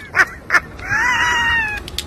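A high-pitched voice: two short yelps, then one drawn-out whiny cry about a second long that rises a little and then falls.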